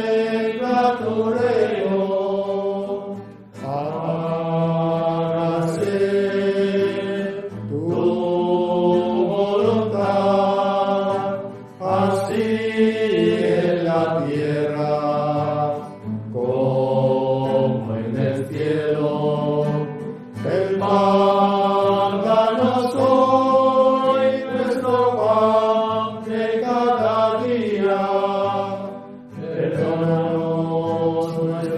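Dominican priests singing a slow devotional hymn in a chant-like style. The phrases last a few seconds each, with short breaks between them.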